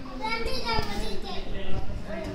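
A young child's high voice calling out in rising and falling tones, without clear words.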